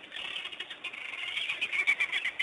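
Dense, rapid high-pitched chirping and twittering animal calls, growing louder near the end.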